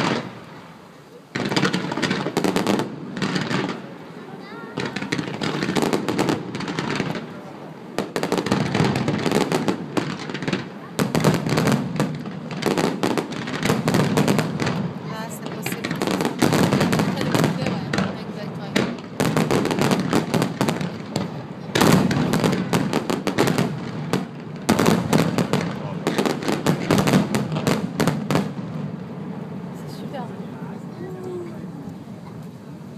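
Fireworks display: aerial shells bursting in rapid bangs and pops. The bangs start about a second and a half in and build into a dense, near-continuous barrage that thins out near the end.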